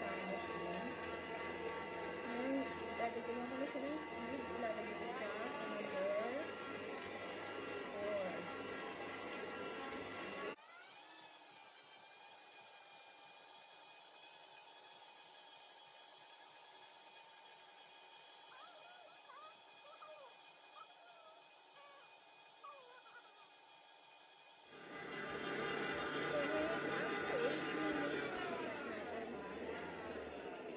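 Stand mixer motor running steadily as its dough hook kneads bread dough: a steady whine of several even tones, with faint voices underneath. It drops suddenly to much quieter about ten seconds in and comes back up near the end.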